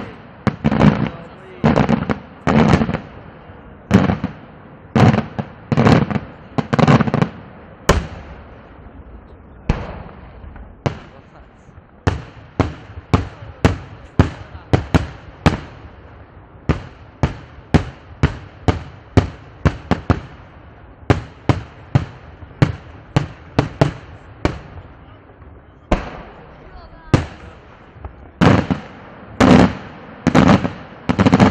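Daytime aerial fireworks: a steady run of shell bursts and sharp bangs, about one to two a second. The bangs come quicker in the middle, pause briefly late on, and then come heavier and louder near the end.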